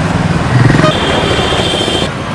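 Road vehicle running in traffic: steady engine and road rumble, swelling about half a second in. A thin, steady high-pitched tone joins at about one second and cuts off at the end.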